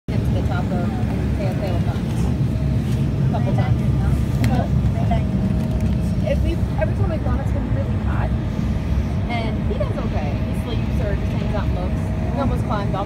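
Steady low rumble inside an airliner's cabin as the plane rolls along the runway, with passengers' voices chattering throughout.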